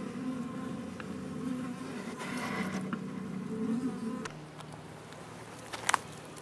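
Honey bees buzzing in a small cluster inside a wooden bait hive, a steady hum. About four seconds in the hum thins out, and a couple of sharp clicks come near the end.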